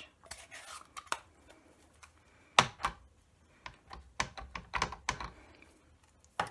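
Scattered light plastic clicks and taps from stamping tools being handled: a clear acrylic stamp plate and ink pad on the Stamparatus stamping platform. The sharpest tap comes about two and a half seconds in, with a quick run of taps a little later.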